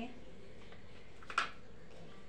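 Faint steady room hiss with a single short, sharp click about one and a half seconds in.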